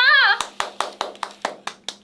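A short high exclamation, then hand clapping: about eight sharp claps at roughly four to five a second that stop just before the end.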